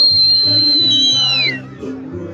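A loud, high whistle held on one pitch for about a second and a half, then sliding down and stopping, over dance music.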